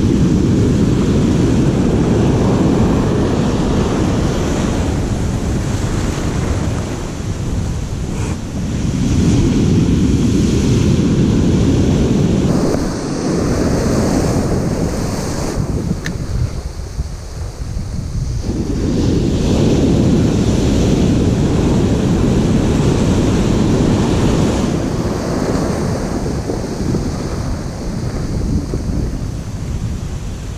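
Ocean surf breaking and washing up the beach, mixed with wind buffeting the microphone; the rushing noise swells and eases in long surges several seconds apart.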